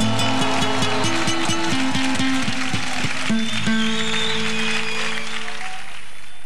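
Acoustic guitar ensemble playing a quick run of plucked notes, then ending on a held chord about three seconds in that fades away.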